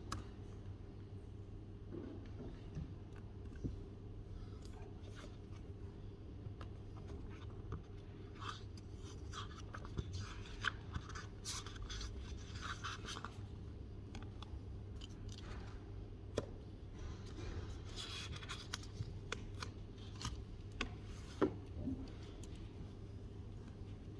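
Paper pages of a paperback book being leafed through and rustling, with scattered light taps and clicks from handling, over a steady low room hum.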